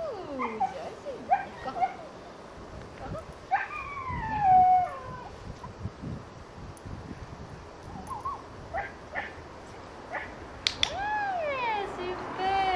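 A young dog whining and yipping in short, high, falling cries, with one longer falling whine about four seconds in. Near the end, a training clicker gives a sharp double click to mark the dog's behaviour.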